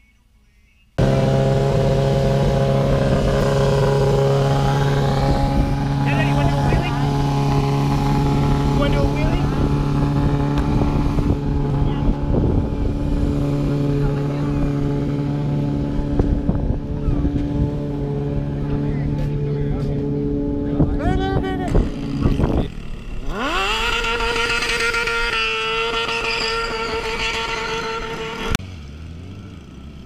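Sportbike engines running steadily, then revved hard twice near the end, the pitch sweeping sharply upward each time, before the sound cuts off abruptly.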